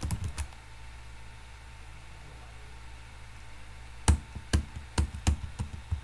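Computer keyboard keystrokes: a couple of key presses at the start, then a quick run of about seven sharp key presses in the last two seconds.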